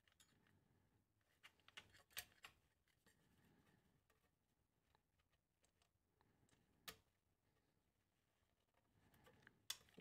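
Near silence, broken by a few faint small clicks and taps from fingers working on a circuit board: a cluster about two seconds in, one near seven seconds, and a few just before the end.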